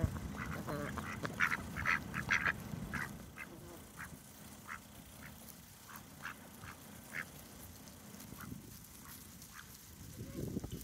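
A flock of domestic ducks giving short, soft quacks, many in quick succession for the first three seconds, then scattered single calls.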